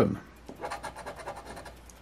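A coin scratching the latex coating off a scratch-off lottery ticket in short, quick, repeated strokes.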